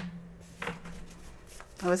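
A stack of paper cards being handled, with a sharp snap at the start and another just over half a second in, under a woman's low, steady hum; she starts speaking near the end.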